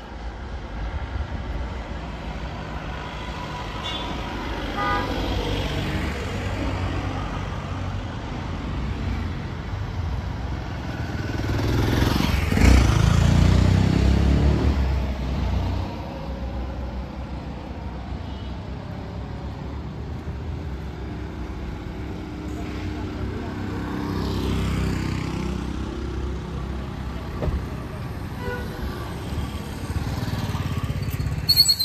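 Street traffic: motorcycles and cars running past close by, the loudest a motorcycle going by near the middle, with a second one passing later on.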